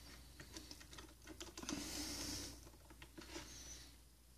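Faint small clicks and taps of a plastic Marvel Legends Punisher action figure being handled and set standing on a wooden shelf, with a short rustle about halfway through.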